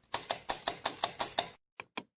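A rapid series of sharp clicks, about six a second, stopping after about a second and a half, then two more single clicks near the end.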